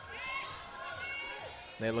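Play on an indoor basketball court: a basketball bouncing on the wooden floor, with two short high squeaks of sneakers, one just after the start and one about a second in.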